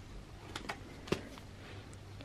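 Faint handling noises: a few short crinkles and taps as a foil pouch of pet recovery food is lifted out of a plastic kit box, the sharpest tap just over a second in.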